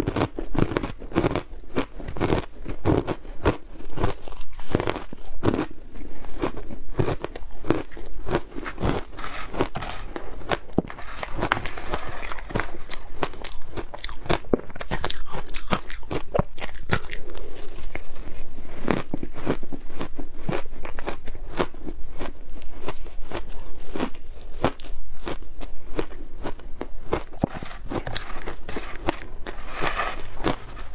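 Close-miked crunching and chewing of mouthfuls of frozen shaved ice: a dense, continuous crackle of ice crystals breaking between the teeth.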